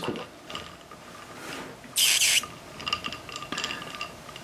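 Small plastic LOL Surprise pet toy squeezed under water: air escaping from it makes squeaky, chirpy sounds, like tweeting. A short hissing burst about two seconds in, followed by a run of quick squeaks.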